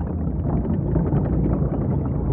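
Jawa sandcrawler sound effect: a heavy, steady low rumble of the vehicle's machinery with dense rattling and clanking over it.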